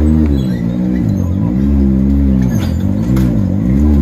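Can-Am Maverick X3 race UTV's engine revved in short throttle blips while rock crawling up a boulder under load, its pitch rising and falling about three times.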